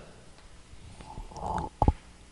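Chalk scratching briefly on a blackboard as a few characters are written, followed near the end by a short low throat or voice sound.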